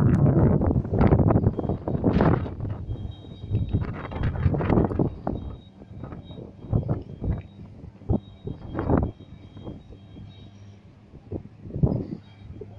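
Wind buffeting the camera microphone in irregular gusts, loudest in the first few seconds and then coming in shorter bursts.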